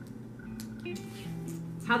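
Soft background music with a plucked guitar, made of steady held notes, with a few faint clicks from handling the bag.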